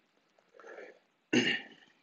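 A man clearing his throat once, a sudden harsh burst about a second and a half in after a softer sound; the clearing comes from the burn of a superhot Dorset Naga chili pepper at the back of his throat.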